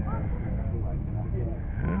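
Background voices of people talking in the paddock over a steady low rumble; there is no clear single engine or sudden sound.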